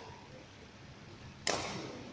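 A badminton racket striking a shuttlecock once, about a second and a half in: a single sharp crack that echoes in the sports hall.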